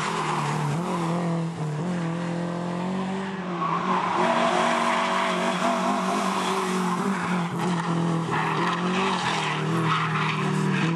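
Rally car engine running hard, its pitch rising and falling with the revs, with tyres squealing. It gets somewhat louder about three and a half seconds in.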